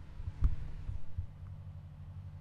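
A faint, low steady hum with a single dull thump about half a second in.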